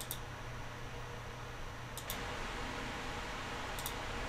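Computer mouse button clicks: three short double clicks, near the start, about two seconds in and near the end, over a steady hiss and low hum of room noise.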